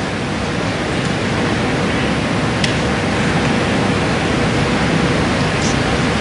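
Steady, fairly loud hiss with no speech, with one faint click about two and a half seconds in.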